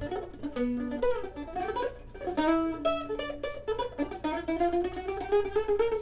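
Acoustic plucked-string music: a fast run of quickly picked notes, with a few held notes and a slowly rising held line in the second half.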